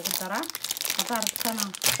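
Wrapper of a bar of cooking chocolate crinkling as hands work it open, with a sharp crinkle near the end. A voice repeats the same short sound over and over.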